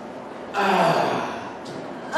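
A person's breathy gasp about half a second in, its pitch falling as it fades out.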